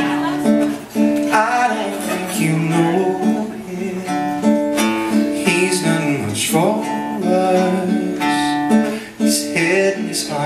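A live song: an acoustic guitar strummed steadily, with a voice singing over it.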